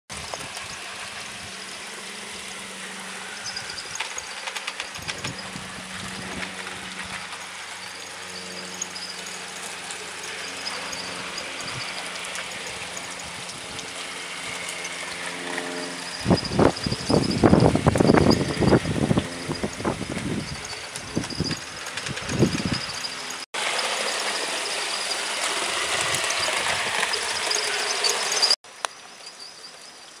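A 7mm-scale model diesel locomotive hauling goods wagons on an outdoor track: a steady motor hum, with a thin high squeal that comes and goes. In the middle comes a spell of loud low thumps, and near the end the sound breaks off abruptly twice.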